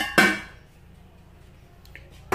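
Two short knocks of kitchenware being handled, the second ringing briefly, right at the start; then only faint kitchen room tone.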